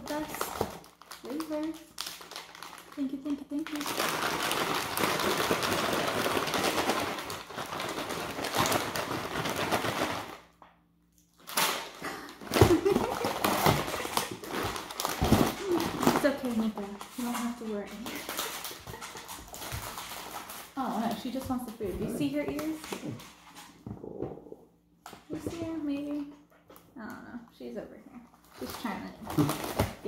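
Packaging rustling as a hand rummages in a cardboard box for about six seconds, then indistinct talk and laughter with small handling clicks.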